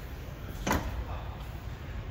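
Rear liftgate of a 2019 Chevrolet Equinox closing and latching shut with a single thud about two-thirds of a second in.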